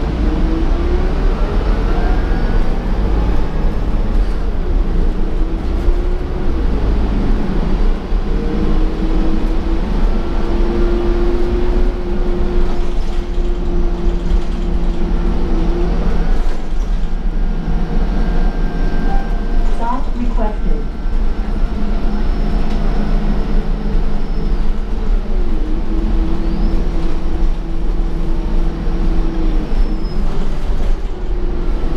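2015 Gillig Advantage transit bus running, heard from inside the cabin: a steady low engine and road rumble under drivetrain whines that rise, hold and fall with the bus's speed. About twenty seconds in there is a quick up-and-down pitch sweep.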